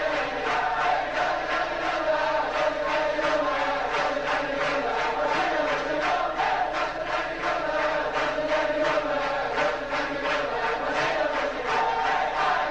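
A large crowd of men singing a Hasidic melody together in unison, with rhythmic clapping about two to three times a second.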